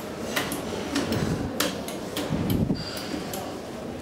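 Push buttons on a Schindler elevator car's panel being pressed over and over, a series of sharp clicks. The car does not move: the elevator is locked off.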